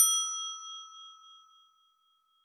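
A single bright bell ding, struck once and ringing out as it fades over about a second and a half: the notification-bell chime of an animated subscribe button.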